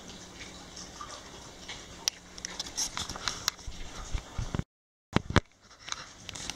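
Dogs eating wet food from metal bowls: quick wet smacks of chewing and licking and small clicks of teeth and tongues against the bowls, busiest in the second half. The sound cuts out for about half a second near the end, followed by a few sharper clicks.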